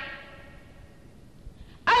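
A pause in a man's preaching speech: his voice trails off, leaving faint background noise, and he starts speaking again near the end.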